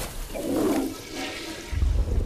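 Animated sound effect of a toilet flushing: rushing, swirling water, with a low rumble coming in near the end.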